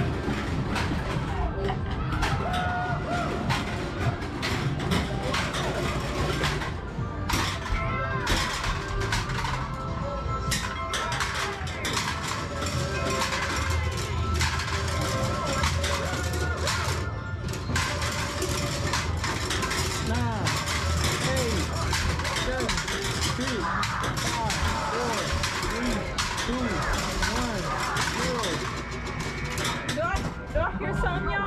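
Busy arcade game-room din: electronic game music and jingles from many machines over a hubbub of voices, with frequent short clacks.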